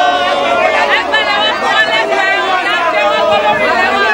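A crowd of protesters shouting and talking all at once, many loud voices overlapping with no pause.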